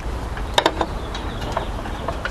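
Clicks and handling noises of a wire stripper working the insulation off a small ground wire, the sharpest a quick cluster about half a second in, over a steady low rumble.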